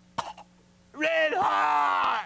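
A man's voice crying in an exaggerated sob: a short sharp catch of breath near the start, then a long, wavering wail from about halfway through.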